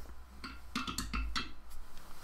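A replica sword being lifted down from a wooden shelf: a quick run of knocks and light clinks with a little ringing, over low rumbling handling noise.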